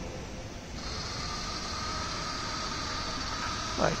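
Small electric motor of a model trash-collecting boat driving its paddle wheel, a steady faint whine that sets in about a second in over a steady hiss.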